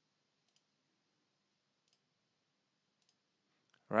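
Three faint computer mouse clicks, spaced a second or more apart, over near silence.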